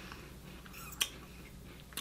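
Faint chewing of crisp wafer cookies, with one short sharp click about a second in.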